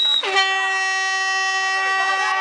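A steady held horn tone with many overtones, cut off briefly just after the start and then sounding again at the same pitch, with faint shouting beneath it.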